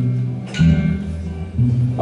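Guitar played live in a slow song between sung lines: two strummed chords about a second apart, each over a low ringing bass note.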